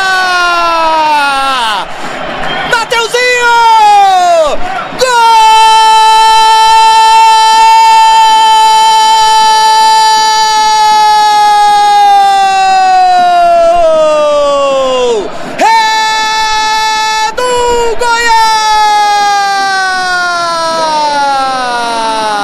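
Brazilian TV football commentator's drawn-out 'gooool' cry for a goal. It is a man's voice held on one high note in several long breaths, the longest about ten seconds, each sliding down in pitch as it ends.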